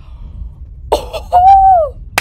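A woman's voice: a sudden sharp gasp a little under a second in, then a loud drawn-out high vocal exclamation that falls in pitch as it ends. A low rumble runs underneath before it.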